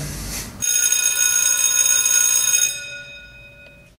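A ringing tone made of several high pitches that starts suddenly about half a second in, holds steady, and fades away over the last second.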